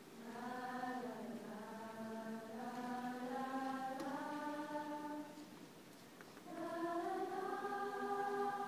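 A choir singing in held chords, heard from the audience in a large hall. One long sustained phrase is followed by a short breath pause a little after five seconds, and then a new phrase begins.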